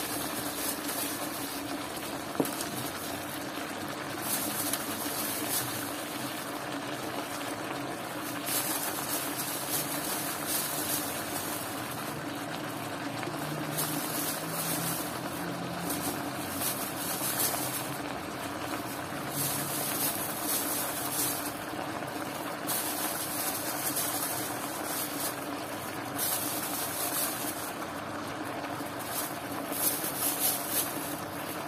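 Pork belly and cabbage cooking in an electric wok with a steady sizzling hiss, broken by irregular crisp rustles as handfuls of cabbage leaves are dropped in.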